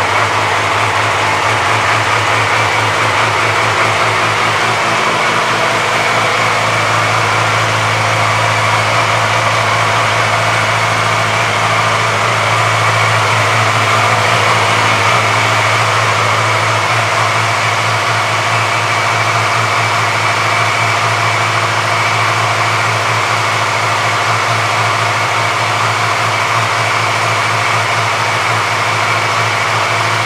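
2006 Yamaha R6's inline-four engine idling steadily, an even hum that holds at a constant level with no revving.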